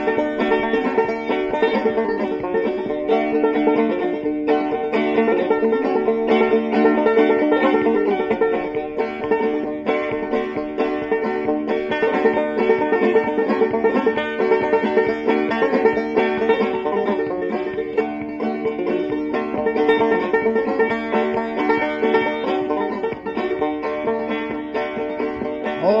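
Bluegrass string band playing an instrumental break between verses, with a fast-picked banjo to the fore over guitar and mandolin. Singing comes back in right at the end.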